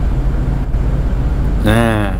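A steady low background hum runs throughout, with a man's voice holding one drawn-out sound near the end.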